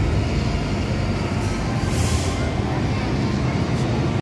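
MTR M-Train standing at the station platform, its steady running noise filling the air, with a short hiss about halfway through. Voices can be heard in the background.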